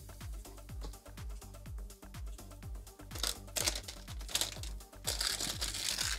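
Background electronic music with a steady kick-drum beat, about two beats a second. About three seconds in, and again near the end, there is louder rustling and crinkling as a cardboard trading-card hanger box and its cards are handled.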